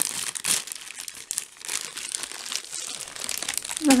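Clear plastic inner bag of a Humanitarian Daily Ration meal pack, with foil food pouches inside, crinkling and crackling irregularly as it is handled just after being opened.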